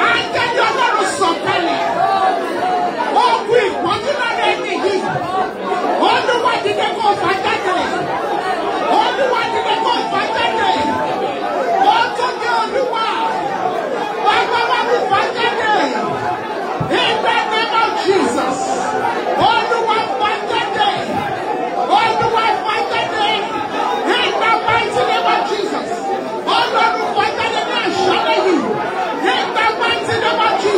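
Many people praying aloud at once: a steady babble of overlapping voices in a reverberant hall, with women praying into microphones amplified above the rest.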